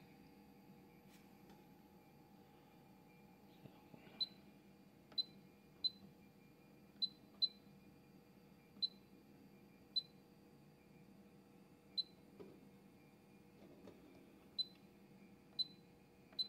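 Schneider Conext SCP system control panel giving short high key-press beeps as its buttons are pressed to scroll the menus: about ten pips at irregular intervals, starting about four seconds in. A faint steady hum lies underneath.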